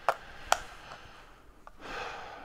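Two small sharp clicks early on, typical of mouth clicks, a fainter click later, and then a soft rushing hiss near the end, like an intake of breath, picked up close on a clip-on lapel microphone.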